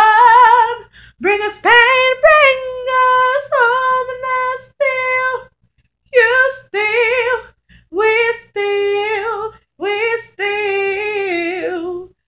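A woman singing a cappella: gliding runs and held notes with vibrato, with a short pause about halfway through.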